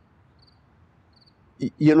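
Crickets chirping faintly in short, high trills about twice a second over a low, steady background hush, typical of a night ambience bed. A man's voice starts near the end.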